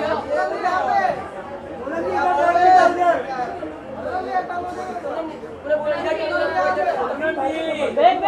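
Several voices talking and calling out at once, overlapping chatter in a crowded room.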